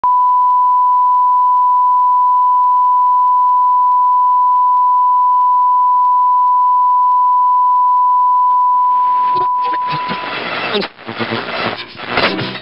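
A loud, steady test tone of the kind played with colour bars, held on one pitch. About nine seconds in it fades out and a noisy, choppy, broken-up sound takes over.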